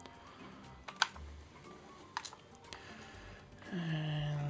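A few sharp clicks from a hot glue gun squeezing out green glue, the loudest about a second in.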